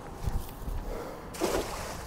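Cast net thrown out flat and landing on the water, its weighted edge hitting the surface in a brief splash about a second and a half in.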